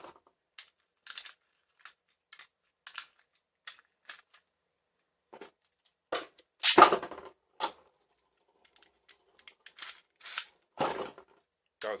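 Plastic clicks and rattles of Beyblade tops being handled and fitted to a launcher, then a loud launch about six and a half seconds in as a top is fired into the plastic stadium. A few more clicks follow, and two more sharp knocks and clatters near the end.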